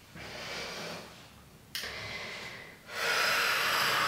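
A woman breathing audibly: three breaths, the second beginning sharply, the third the loudest and longest, starting about three seconds in.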